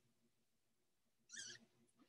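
Near silence, broken once about a second and a half in by a brief, faint, hissy noise.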